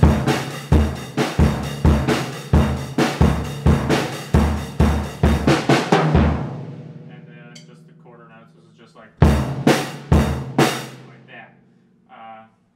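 Acoustic drum kit playing a steady eighth-note beat, about two strokes a second with bass drum and snare under cymbal hits; it stops about six seconds in and the kit rings out. About nine seconds in come four more hits that ring away.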